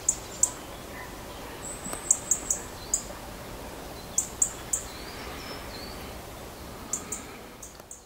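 Small birds giving short, high-pitched chirps, often in quick runs of two or three, over a steady outdoor background hiss.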